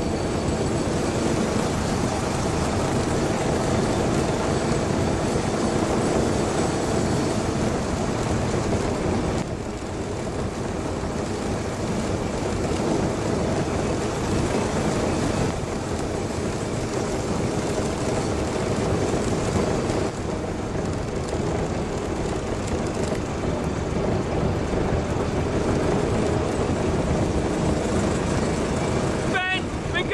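Ride-on miniature railway train running steadily along its track, a continuous rumble of wheels and drive heard from aboard.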